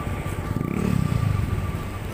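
A motorcycle engine over steady traffic rumble; the engine grows louder about half a second in and falls back after about a second.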